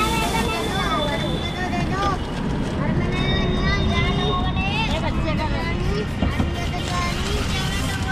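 Several children's voices chattering and calling out at close range, over the steady low rumble of car and street traffic.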